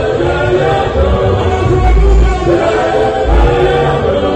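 Gospel choir of men and women singing together in harmony into microphones, over sustained deep bass notes.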